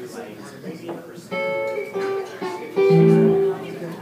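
Amplified guitar sounding a few separate notes or chords on stage: one about a second in, another at two seconds, and a louder ringing one near the end, with chatter underneath.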